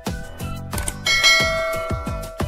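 Background music with a steady beat of about four drum hits a second. About a second in, a bright bell chime sound effect rings out over it and slowly fades: the notification-bell ding of a subscribe-button animation.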